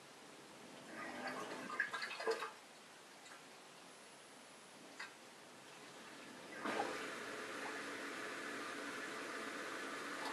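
Bosch dishwasher drain pump starting with a short gurgling burst of water, stopping, then about two-thirds of the way through starting again and running steadily. This start-stop running is the fault being shown: the pump keeps cutting out while there is water in the sump instead of pumping it all away.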